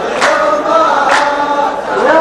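A row of men chanting a drawn-out refrain in unison, punctuated by sharp group handclaps about once a second. It is the clapping chorus line of a mawwal sung-poetry duel.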